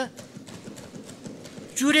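A quick, irregular patter of light knocks, well below the level of the speech around it.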